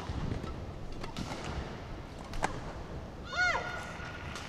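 Badminton rally: sharp racket strikes on the shuttlecock about a second and a quarter apart over steady hall noise. Near the end comes a short, high-pitched squeal that rises and falls.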